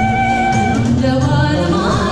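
Gospel song: a woman singing over instrumental backing. She holds one long note through the first second, then starts a new phrase that climbs near the end.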